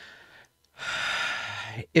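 A man breathing audibly between sentences: a faint breath, then a louder breath lasting about a second.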